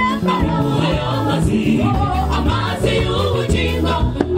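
Choir singing a lively gospel song, with a bass line stepping between low held notes and a steady beat underneath.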